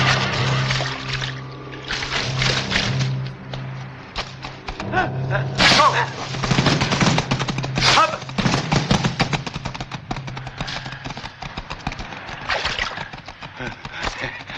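Film soundtrack: an orchestral score holding a low sustained note for about the first ten seconds, under the sound effects of a struggle. There are many clattering impacts and two loud cries, about six and eight seconds in.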